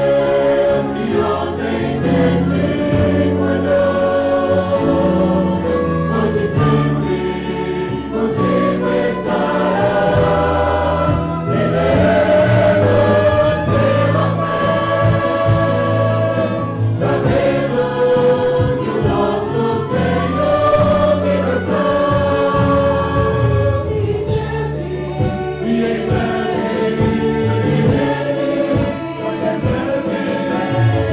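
A congregation and worship singers singing a Portuguese-language hymn together over musical accompaniment, continuously.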